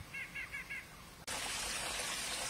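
A bird sings a quick run of about five repeated chirps in the first second. A little over a second in, the sound cuts abruptly to the steady rush of a small rocky creek.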